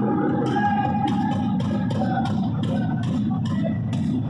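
Live blues-rock band playing: an electric guitar picks out melodic lead notes over drums and bass, with a steady rhythm of short cymbal strokes about three a second.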